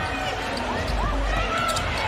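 Live basketball game sound on an arena hardwood court: a basketball being dribbled and shoes moving on the floor, over a steady murmur from the arena crowd.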